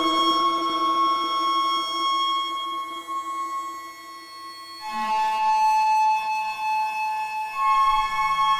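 Ambient synthesizer drone from a Soma Lyra-8 played with the Soma Pipe and Cosmos: layered held tones that thin out and fade about halfway through, then a new, higher chord enters at about five seconds and shifts again near the end.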